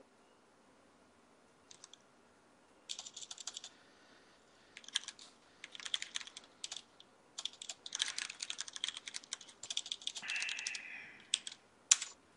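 Computer keyboard typing in quick bursts of keystrokes with short pauses between them, starting about two seconds in and ending with a single sharper keystroke near the end.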